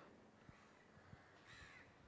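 Near silence in a pause between speakers, with a few faint soft knocks from a handheld microphone being passed along and a faint high call about one and a half seconds in.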